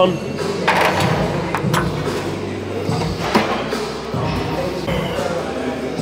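Large-room gym sound with faint background music. A few sharp knocks and clicks come about a second in, near two seconds and past three seconds, as a seat belt strap and buckle are fastened on a seated leg curl machine.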